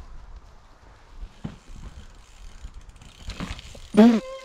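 Mountain bike's freewheel hub ticking as the rider coasts over grass, over a low rumble.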